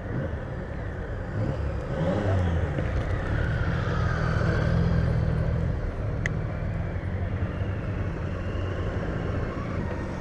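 Motorcycle and road-traffic engines on the street alongside, swelling to their loudest in the middle as a group of motorcycles approaches, over the steady rumble of a bicycle rolling over cobblestones.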